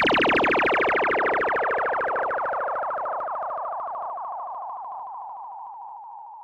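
Electronic synthesizer tone pulsing rapidly at the end of a hip-hop beat. It thins to a single narrow tone and fades out steadily as the track ends.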